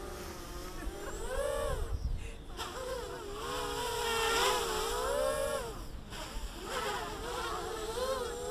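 Home-built quadcopter's motors and propellers buzzing overhead, the pitch rising and falling in three swells as the throttle changes.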